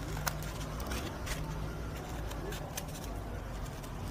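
Scissors snipping through egg-carton material: a series of short, irregular cuts while rough edges are trimmed off a cut-out piece.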